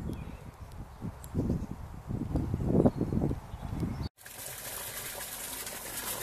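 Low, irregular rumbling and buffeting with a few louder swells, then, after a sudden cut, the steady even rush of a small river's water flowing in its brick-walled channel.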